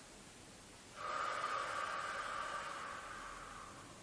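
A woman's long, loud exhale, starting about a second in and lasting about three seconds before fading near the end: Pilates breathing, blowing out on the effort of raising the arms overhead while holding a wide squat.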